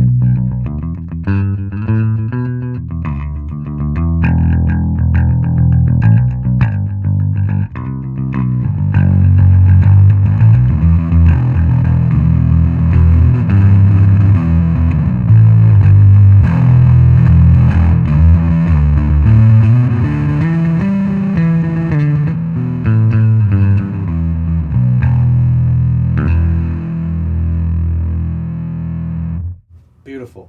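Electric bass played through an Electro-Harmonix Sovtek Deluxe Big Muff Pi fuzz pedal. It starts with a clean tone, with separate notes. About nine seconds in the fuzz comes in, thick and sustained, blended with the clean signal so that it sounds like a clean and a distorted bass together. The playing stops just before the end.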